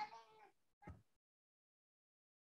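Near silence, apart from a brief faint pitched call in the first half second and a short faint blip about a second in.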